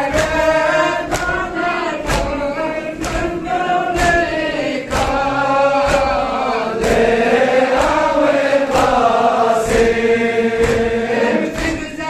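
A crowd of men chanting a Balti noha, a Shia mourning lament, together, the melody rising and falling. Sharp strikes land about once a second in time with the chant, the beat of matam (chest-beating).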